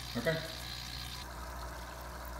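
Low-level bubbling and fizzing of an aquarium air stone in a bucket of water, with a steady low hum underneath.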